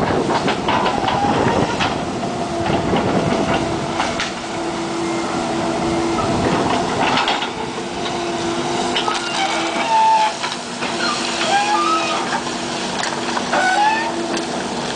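Kobelco hydraulic excavator working in demolition rubble: its engine and hydraulics run with a steady hum, while the bucket crunches through broken wood and debris with repeated knocks and cracks. A few short squeals come in the second half.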